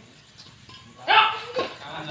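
A short, loud cry about a second in, followed by a shorter one, over the faint hits of a badminton rally.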